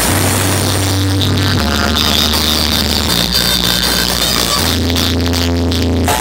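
Electronic dance music played loud through a DJ sound system: long held deep bass notes, each stepping to a new pitch about every second and a half.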